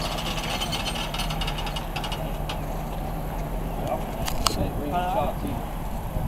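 A four-wheel-drive towing vehicle's engine running steadily under load as it drags a steam locomotive slowly along the track up a slight grade. A couple of sharp clicks come about four and a half seconds in.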